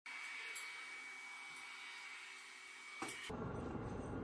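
C-130H turboprop aircraft noise on the flight line: a steady hiss with a high, even whine. About three seconds in it cuts to a heavy low rumble.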